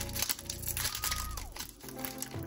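Foil trading-card pack wrapper crinkling and tearing as it is pulled open by hand, with soft background music underneath.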